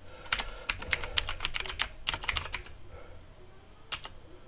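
Computer keyboard being typed on: a quick run of keystrokes for about two and a half seconds, then a pause and a single keystroke near the end.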